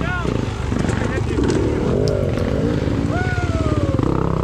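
Dirt bike engines running at low revs on a steep woodland trail, with indistinct voices over them and a falling tone near the end.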